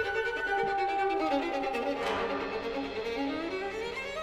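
Violin and orchestra playing a passage of a violin concerto. A melodic line steps downward and then climbs again over a sustained low note.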